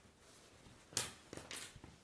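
A cloth towel being shaken out: a sharp flap about a second in, the loudest sound, then a second, longer flap about half a second later and a few fainter rustles.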